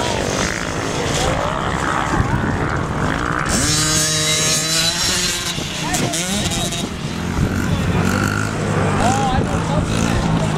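Small 50cc dirt bike engines running and revving on the track, with one climbing in pitch as it revs up a few seconds in. Voices are heard over the engines.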